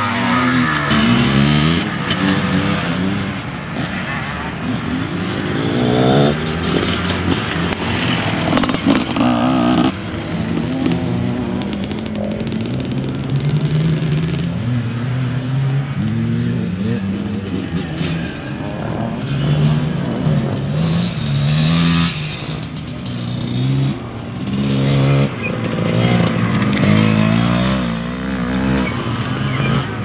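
Classic off-road motorcycles riding a dirt course, engines revving up and down again and again as the riders accelerate, shift and pass one after another.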